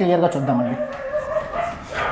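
A whiteboard being wiped with a duster, the rubbing giving a high squeaky whine about a second in. A spoken word trails off at the start.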